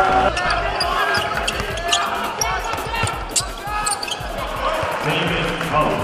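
Live basketball game sound: sneakers squeaking on the hardwood court and a ball bouncing, over voices in the arena.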